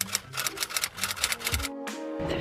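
Typewriter keystroke sound effect, a quick run of clacks as on-screen text is typed out, over faint background music; the clacking stops about one and a half seconds in.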